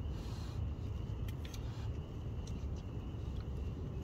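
A steady low rumble, with a few faint clicks of a utensil against a metal camping pot as food is taken from it.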